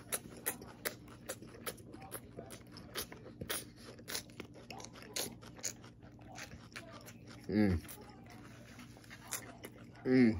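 A person chewing crunchy salad close to the microphone: soft, crisp crunches come a few times a second, with a short hummed "mm" about seven and a half seconds in.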